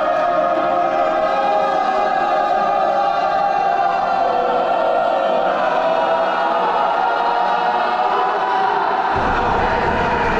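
A group of young players' voices holding one long, loud chanted cry, the pitch wavering slightly, as in a team chant after the final handshake.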